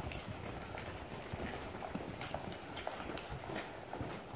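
Hoofbeats of several saddled horses and mules trotting past on arena sand: many soft, irregular thuds overlapping, with no steady rhythm.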